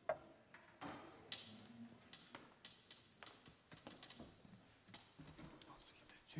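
Faint, scattered clicks and knocks of instruments and music stands being handled, with a sharper knock just after the start as an acoustic guitar is lifted from its stand.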